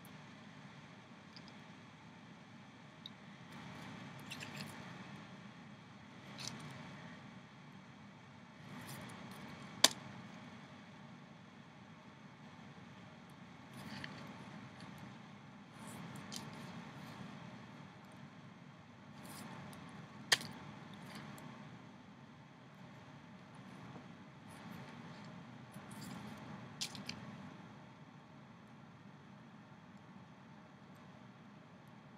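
Rubber loom bands being hooked and pulled through a woven rubber-band figure with a small metal hook: faint rubbing and stretching in soft bouts every few seconds, with two sharp clicks about ten and twenty seconds in.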